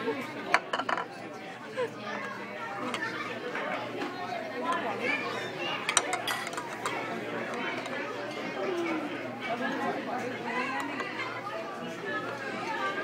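Steady chatter of many voices from other diners, with a few sharp clinks near the start and again about six seconds in, from a metal spoon knocking against a plastic bowl.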